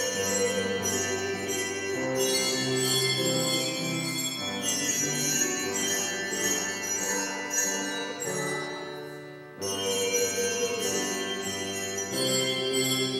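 Handbell choir ringing a tune in chords, the bells' tones sustaining and overlapping as each chord changes, with a brief break about nine and a half seconds in before the next phrase begins.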